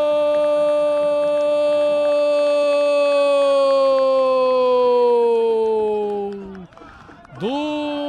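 Brazilian football commentator's long drawn-out 'goool' cry, one held note lasting until about six and a half seconds in, its pitch sinking at the end. After a short break he starts talking again near the end.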